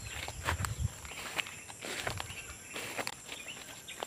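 Footsteps and rustling through low weeds and dry leaves on a slope: irregular soft steps with small crackles and knocks.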